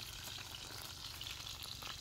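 Pieces of chicken frying in oil in an open pan, a faint, steady sizzle with light crackles.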